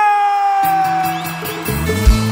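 Live forró band music: one long pitched note slides slowly downward, and sustained chords with bass come in about half a second in, building toward the song's beat.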